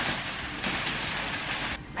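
Plastic bubble-wrap packaging crinkling and rustling as it is pulled and handled out of a cardboard box, stopping abruptly near the end.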